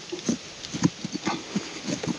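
A man grunting in short bursts about twice a second while he pries a buried rock loose with a rock hammer, with the scrape and knock of the hammer's pick in the soil and stones.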